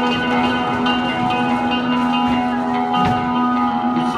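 Live rock band of electric guitars, bass guitar and drum kit playing, the guitars holding a long ringing chord, with a few drum and cymbal hits.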